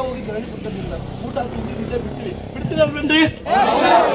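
A motor vehicle passing on the road, with a low running rumble that swells loudest near the end, under people's voices.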